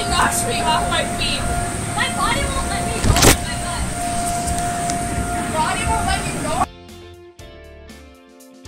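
Loud party din of children's shouts and squeals over a steady hum, with one sharp thump about three seconds in. Near the end it cuts abruptly to soft guitar music.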